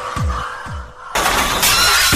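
Frenchcore music: distorted kick drums, each falling in pitch, about four a second, that thin out and fade in the first half. About a second in, a sudden crash of noise cuts in and carries the track on toward the next section.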